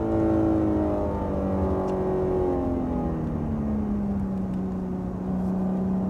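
BMW M3 Competition's twin-turbo straight-six heard from inside the cabin. Its revs fall steadily over the first four seconds or so as the car slows, then it runs steadily at lower revs.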